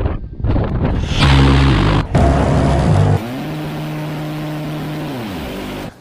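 Type 1130 30 mm Gatling close-in weapon system firing: loud buzzing bursts, then a steadier, quieter buzz that drops in pitch and stops near the end.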